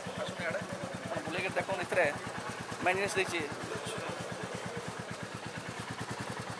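Royal Enfield Classic 350's single-cylinder engine idling with a steady, rapid, even pulse. People's voices can be heard over it.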